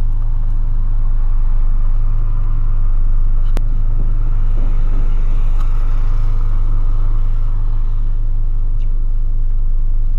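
The VW Polo's 1.6 four-cylinder engine idling steadily, heard from inside the cabin. There is a single sharp click a few seconds in.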